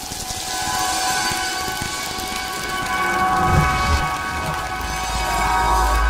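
Synthesized sound-design bed under an animated station ident: a held chord of steady tones under a hissing wash, with a deep rumble swelling up in the second half.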